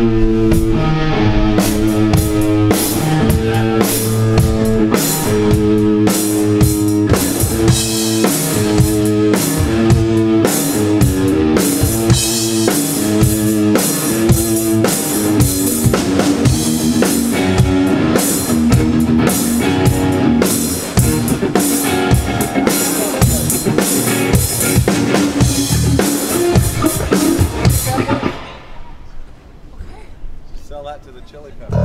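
A rock band playing together: drum kit with bass drum and cymbals, electric guitars and electric bass in a steady riff. It stops abruptly near the end, leaving a short fading ring.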